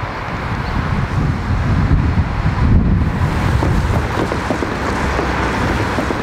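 Strong wind buffeting the camera microphone: a loud, gusting noise that swells about two to three seconds in.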